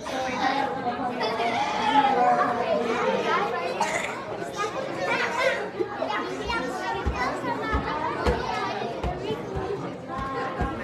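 Many children's voices chattering and talking over one another in a large, echoing hall, with a few brief low thumps in the second half.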